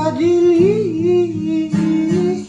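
Filipino acoustic pop song: a solo voice singing long held notes that bend in pitch, over plucked acoustic guitar.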